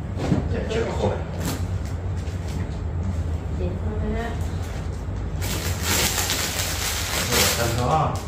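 Plastic packaging crinkling as a clear plastic bag is handled during packing. It is a dense rustle that starts about five seconds in, over quiet talk and a steady low hum.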